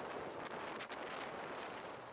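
Steady hiss of wind buffeting an onboard camera's microphone, mixed with the rush of the sea past a motor yacht under way; it eases off near the end.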